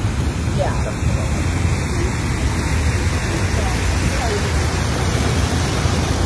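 Wind rushing over the microphone of a moving bicycle: a steady, deep rush of noise with faint voices underneath.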